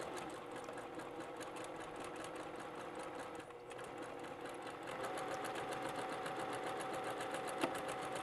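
Sewing machine stitching a seam through layered fabric, the needle ticking in a rapid, even rhythm over the steady hum of its motor.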